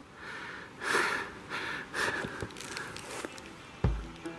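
Footsteps crunching across snow, a soft step every half second or so, and a low thump near the end.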